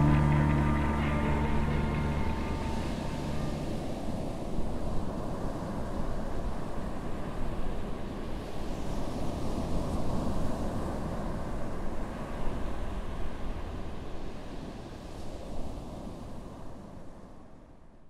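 A held music chord dies away in the first few seconds, leaving a steady rushing, rumbling noise that slowly fades out to silence at the very end.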